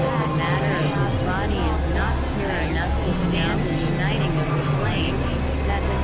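Experimental synthesizer drone music: a low droning bass held under a busy layer of short, warbling, voice-like pitch sweeps that rise and fall several times a second.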